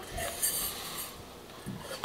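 Cane sugar poured into a glass jar: a faint soft hiss lasting under a second, about half a second in.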